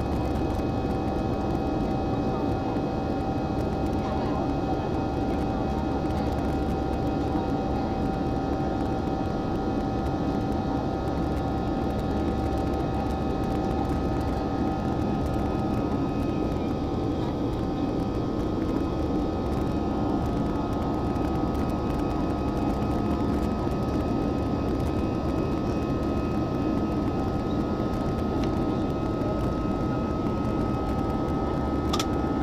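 Steady jet engine and airflow noise heard inside an Airbus A320-family airliner cabin in flight: a constant deep rush with a couple of thin, steady whining tones riding on it.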